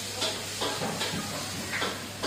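A steady hiss of background noise with faint, indistinct voices.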